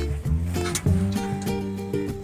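Background music: a light tune on plucked strings with held notes.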